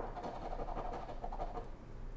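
A coin scraping the latex coating off a lottery scratch-off ticket: a faint, dry scratching, with a sharp click as the coin comes down at the start.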